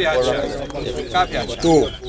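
Caged towa-towa seed finches singing short chirping phrases in a bird song race, against people's voices; in this race each song phrase is counted.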